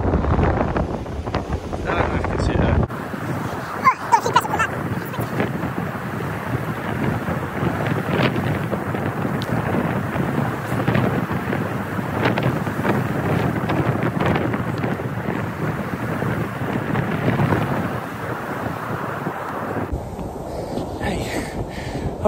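Strong wind buffeting the microphone with a deep rumble, changing abruptly about three seconds in to a steady rush of wind and breaking surf.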